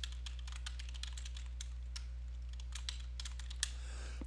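Typing on a computer keyboard: a quick, uneven run of key clicks as a sentence is typed out, over a steady low hum.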